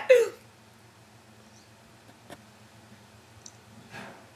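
Quiet room tone with a low steady hum, broken by a single faint click about two seconds in.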